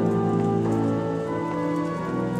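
Church organ playing slow, sustained chords, the held notes shifting to a new chord about halfway through and again near the end.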